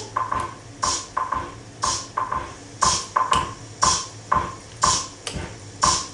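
Wurlitzer Sideman 5000 electromechanical drum machine playing its Foxtrot rhythm: wood-block clicks about twice a second with a hissing cymbal-like accent about once a second, while the block sound is being adjusted at the panel.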